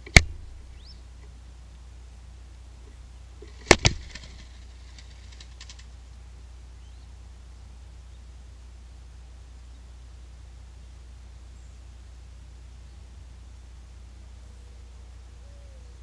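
Two sharp knocks from mourning dove squabs moving about on a wooden nest platform close to the microphone: one just after the start, then a quick double knock about three and a half seconds later, followed by a brief rustling flutter. A low steady hum lies underneath.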